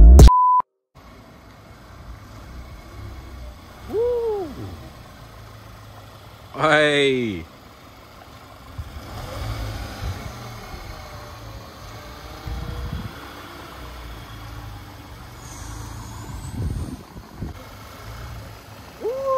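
A short steady beep near the start, then a low steady rumble of a car engine idling in a quiet street. A brief voice call comes about four seconds in, and a loud shout falling in pitch about seven seconds in.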